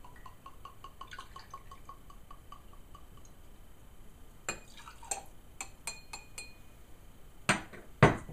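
Vodka glugging from a large bottle into a metal jigger, a quick even run of gurgles that fades out after about three seconds. Then a few light metallic clinks of the jigger against a glass, and a single knock near the end.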